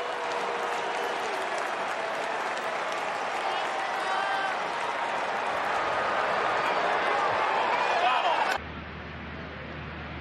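Ballpark crowd noise, with applause and scattered voices in the stands. It cuts off suddenly about eight and a half seconds in, giving way to quieter stadium ambience with a steady low hum.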